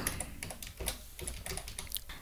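Typing on a computer keyboard: a quick run of soft key clicks.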